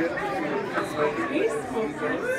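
Overlapping voices talking and chattering, with no music playing.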